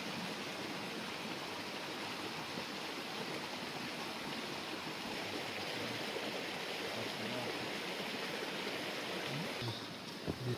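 Steady rush of running water, constant in level throughout.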